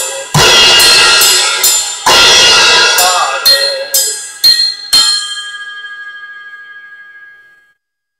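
Tama drum kit closing out a song. Two big crashes come about a second and a half apart, then four sharp hits between about three and a half and five seconds in. A cymbal is left ringing and fades away to silence near the end.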